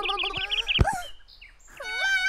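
Cartoon sound effects: a quick string of high chirps over a wordless, childlike vocal sound, then a short falling glide. The sound dips low about halfway through before a swooping tone rises near the end.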